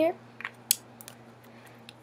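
A few light plastic clicks and taps from a small squeeze-tube concealer with a brush tip being handled and rubbed against the back of a hand, with one sharper click a little under a second in.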